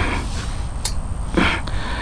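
A single sharp click a little under a second in, then a short snort-like breath from the man, over a steady low rumble of outdoor background.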